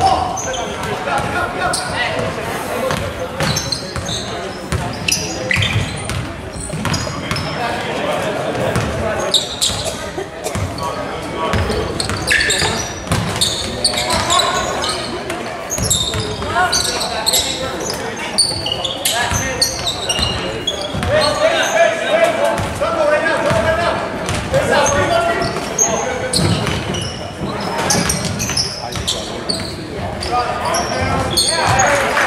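Basketball game sounds in a large gym: a basketball bouncing on the hardwood court in repeated knocks, with players and spectators calling out and shouting, and the hall echoing.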